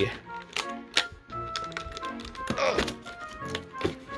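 Cardboard advent calendar door being pushed open and a small bag pulled out: several sharp clicks and taps. Quiet background music plays underneath.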